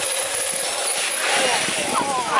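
Radio-controlled scale crawler truck driving hard through a muddy water pit, a steady splashing hiss, with voices faint in the background.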